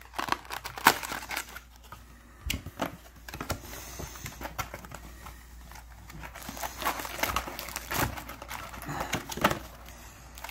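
Plastic wrapping and cardboard of a trading-card booster box crinkling and crackling as the box is unwrapped and opened by hand, with irregular sharp clicks and rustles throughout.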